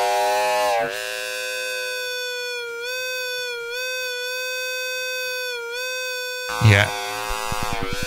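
Digital feedback loop through Ableton Live 12's Roar distortion device, self-oscillating into a sustained pitched drone with a stack of overtones that wavers slightly in pitch. Near the end it breaks into a rapid pulsing of about ten pulses a second: straight feedback.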